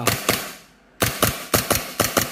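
A pistol fitted in an IMI Defense KIDON conversion kit firing rapid shots with the slide cycling: two near the start, a brief pause, then a quick string of about five at roughly five a second. The kit's shroud makes each report louder and more echoing.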